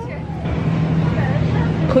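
Store background noise: a steady low hum and hiss with faint voices in the background, as the camera is carried along an aisle.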